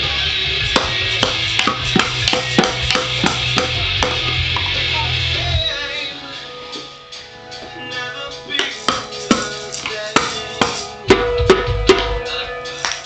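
Small toy bongo drums struck unevenly with a wooden stick and a maraca, about two or three hits a second, over recorded music with a bass line that stops about six seconds in. After that the drumming carries on alone in uneven bursts, with the hardest hits near the end.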